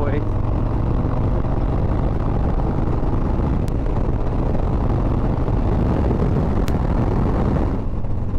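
Harley-Davidson Street Bob 114's Milwaukee-Eight 114 V-twin running at a steady cruise, a low even drone under loud wind rush on the camera microphone.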